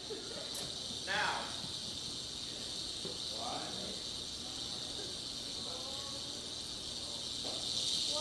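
Steady high hiss with faint, scattered voices murmuring in a theatre audience.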